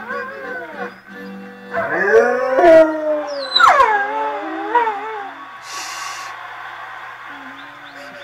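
A husky howling along to music: a run of long howls that rise and then slide down in pitch, loudest between about two and four seconds in, the last one starting high and falling away before it tails off near the middle.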